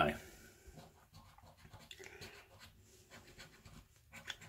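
A coin scratching the scratch-off coating from a paper scratchcard: faint, quick, repeated scrapes that come in short runs.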